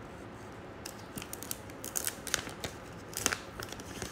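An irregular run of light, sharp clicks and taps over a faint room hiss, starting about a second in, with the loudest click a little after three seconds.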